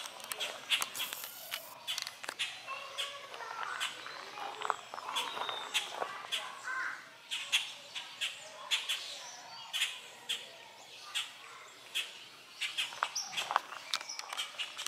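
Birds chirping in short, repeated calls, mixed with frequent sharp clicks and crunches.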